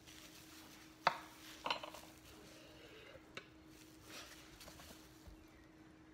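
Sharp clinks against a stainless steel bowl as cantaloupe seeds and scraps are knocked into it: a loud one about a second in, a second soon after and a small one later, over a faint steady hum.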